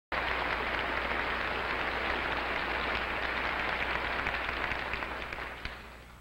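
Audience applauding, a dense steady clapping that dies away over the last second or so.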